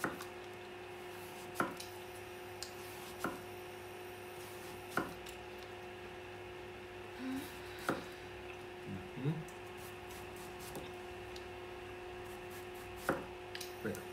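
A chef's knife slicing an apple thinly on a wooden cutting board: a sharp knock each time the blade meets the board, several times, at uneven intervals. A steady low hum runs underneath.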